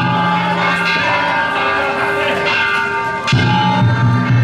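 Danjiri festival cart music: metal hand gongs being struck over and over and left ringing, over a deep drum that comes back louder about three seconds in.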